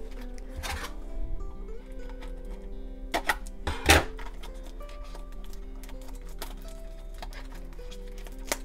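Soft background music with sustained notes, over a few sharp crackles and taps as fingers pick at the cellophane wrap of a paper sticker pack to open it. The loudest crackle comes about four seconds in.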